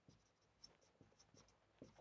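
Very faint, scattered short squeaks and light taps of a marker pen writing on a whiteboard.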